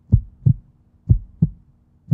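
Heartbeat sound effect: low double thumps, lub-dub, about one pair a second, over a faint steady hum.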